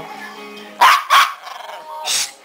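Pomeranian dog giving two short, sharp barks in quick succession about a second in.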